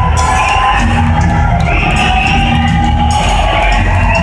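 Loud live rock music in a large arena, with heavy bass and long held high notes, and a crowd cheering underneath.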